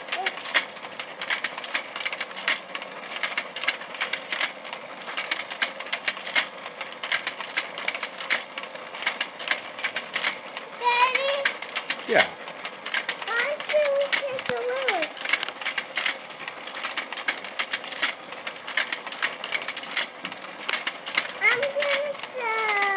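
Battery-powered toy fishing game running, its turning board and gears giving a steady, rapid clicking rattle. A child's voice cuts in briefly about halfway through.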